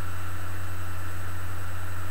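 A steady low hum under a faint even hiss, holding the same level throughout.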